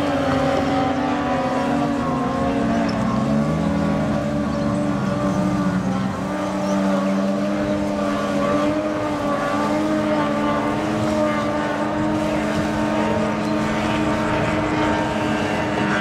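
850cc-class racing boat outboard engines running at full throttle: a loud, steady high drone whose pitch wavers slightly. A lower engine tone rises briefly about three seconds in.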